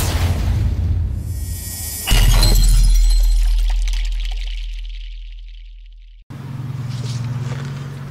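Logo-intro sound effect: a swelling whoosh builds into a sudden impact with a glassy shatter and a deep bass boom, which fades away over several seconds. About six seconds in, the sound cuts to a steady low hum.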